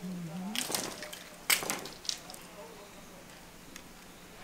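A kitchen knife cutting into a cane fishing rod, a bamboo-like caniço: a couple of short cutting strokes, then a sharp crack about a second and a half in as the cane splits.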